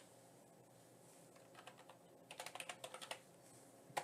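Faint typing on a computer keyboard: a few scattered keystrokes, then a quick run of keys a little over two seconds in.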